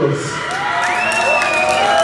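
Crowd cheering and applauding, with long drawn-out shouts over scattered clapping.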